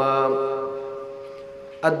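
A man chanting Arabic recitation, holding one long note that slowly fades away, then starting the next word near the end.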